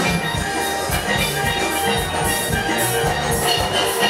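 Live calypso band music with a steady drum beat.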